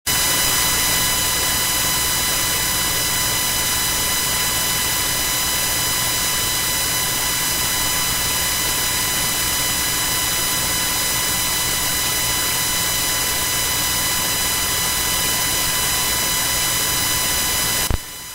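Loud steady static: an even hiss with a buzz of steady tones and a low hum. It cuts in suddenly out of silence and drops sharply in level near the end.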